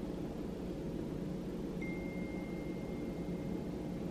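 Quiet indoor room tone with a steady low hum. A faint, thin, high steady tone comes in about two seconds in and holds.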